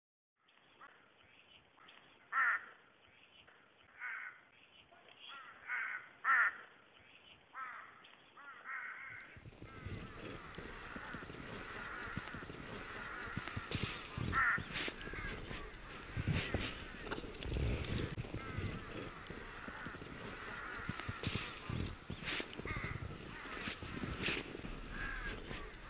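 A string of short animal calls, about ten in the first nine seconds. After that a noisier background with clicks and knocks, and the calls go on through it.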